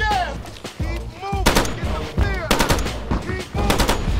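Machine-gun fire in three short bursts about a second apart, with shouting voices and music underneath.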